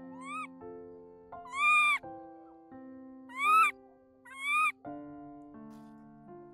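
A baby macaque gives four high calls that rise then fall in pitch, each about half a second long. The second and third calls are loud and slightly rough. Soft piano music plays underneath.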